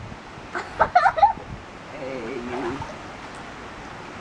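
Water sloshing and splashing in an inflatable paddling pool as a child wades and moves about in it, with short bits of voice over it.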